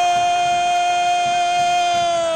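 A football commentator's long, drawn-out shout of "gooool" after a penalty goal: one loud vowel held on a single steady note.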